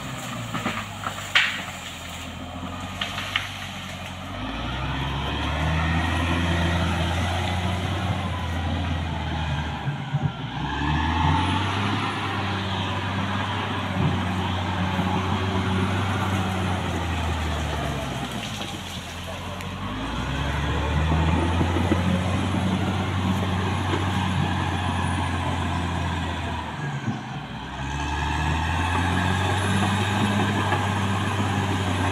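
Caterpillar D6R XL crawler bulldozer's diesel engine working, its revs climbing and falling back four times, each surge held for several seconds. A few sharp cracks come in the first few seconds.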